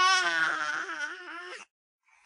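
A baby crying: one long cry with a wavering pitch that stops about a second and a half in.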